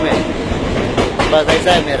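A train running past on the tracks, its wheels clattering, loud enough to cover the talk, with brief fragments of a man's voice over it near the end.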